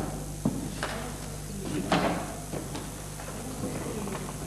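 A few short knocks and rustles from actors moving on a wooden theatre stage, the loudest about two seconds in, over a steady low hum.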